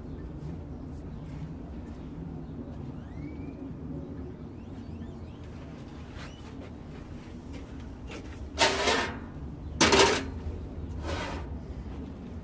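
Three short, rough scraping strokes of a hand tool working refractory mix on a propane forge, about two-thirds of the way in, the second the loudest, over a steady low hum.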